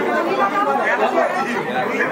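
Speech: a person talking continuously, with no other sound standing out.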